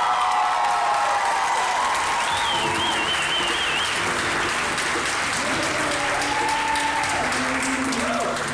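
A crowd of wedding guests applauding steadily, with a high wavering cry rising above the clapping about two seconds in.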